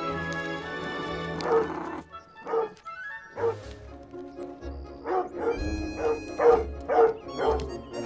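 A large dog barking over film-score music. The barks start about two and a half seconds in and come about two a second near the end.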